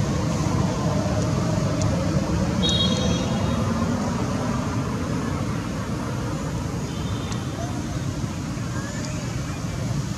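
Steady low rumble of outdoor background noise, like distant traffic, with faint voices in it and two brief high chirps, about three seconds and seven seconds in.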